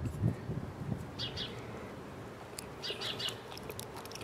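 Small birds chirping in short calls, a pair about a second in and a quick run of several more around three seconds in.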